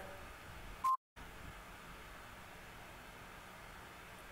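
Quiet room tone broken about a second in by a single short, high electronic beep, cut off by a moment of total silence at an edit before the room tone returns.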